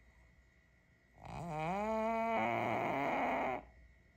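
A sleeping pug gives one long, trumpet-like snore through her nose about a second in. It rises in pitch, turns rough and rattly partway through, and stops abruptly.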